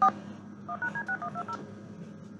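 Touch-tone telephone dialing tones: one loud tone pair right at the start, then a rapid run of about nine short two-tone beeps, over a steady low hum.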